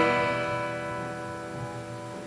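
Acoustic guitar's last chord ringing out and slowly fading away at the end of the song.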